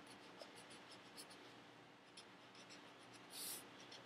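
Felt-tip marker drawing on sketchbook paper: faint, short scratchy strokes one after another, with one slightly louder, longer stroke about three and a half seconds in.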